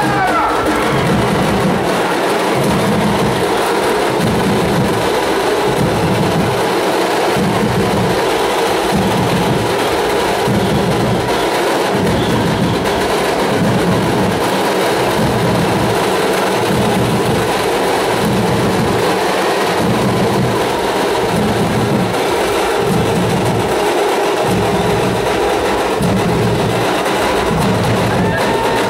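Dhol-tasha drumming for a Ganesh immersion procession: deep dhol beats in a pattern that repeats about every second and a half, over a steady high clatter of tasha drums.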